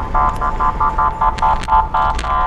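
A car alarm sounding in rapid electronic beeps, about five a second, all on one steady pitch.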